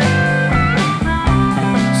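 Blues-rock band music with a guitar playing over bass and drums, in a short break between sung lines.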